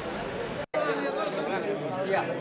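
Crowd chatter: many people talking at once in the street. The sound cuts out completely for a moment about a third of the way in.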